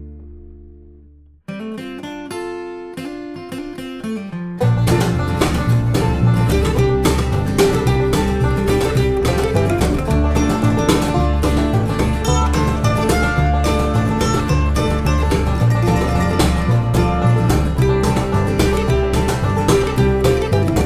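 Bluegrass band playing an instrumental break on banjo, acoustic guitar, mandolin and double bass. A held chord fades out, a single picked instrument plays a short lead-in about a second and a half in, and the full band with double bass comes in with quick picking a few seconds later.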